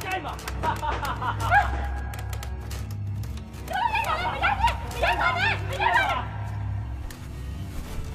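Voices talking over background music with a steady low hum.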